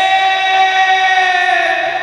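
A man singing a naat into a microphone, holding one long note that sinks slightly in pitch near the end.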